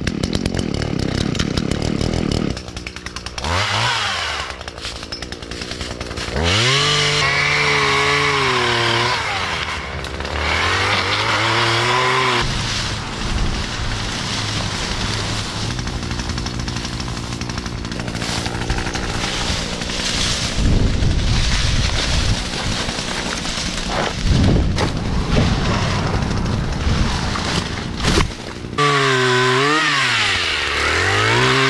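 Echo two-stroke pole saw running, revving up and down several times, its pitch rising and falling as it works, with a rougher, noisier stretch in the middle.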